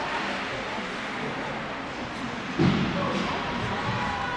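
Ice hockey game in an indoor rink: steady hall noise with spectators shouting. About two and a half seconds in comes a sudden loud burst of sound.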